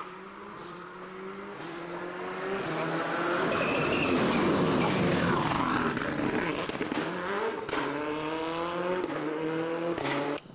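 A Subaru Impreza rally car's turbocharged flat-four engine approaching at speed and passing, loudest about four to five seconds in with a rush of tyre noise. It then revs up through the gears as it accelerates away, the pitch climbing, dropping at an upshift and climbing again.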